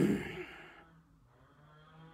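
A man's sigh: a short voiced onset that falls in pitch and trails off into a breathy exhale, fading over about a second.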